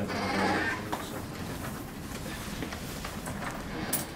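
Indistinct voices and background noise in a busy public office. A voice is loudest in the first second, then a steady murmur follows with faint scattered clicks and knocks.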